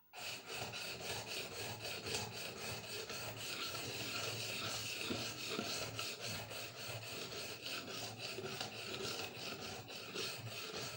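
Steel knife blade being sharpened on a wet fine whetstone: rapid, even back-and-forth strokes of scraping grit against steel, starting suddenly and going on steadily.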